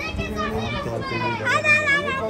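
Children's voices shouting and calling out over each other, several high voices at once, loudest about one and a half seconds in.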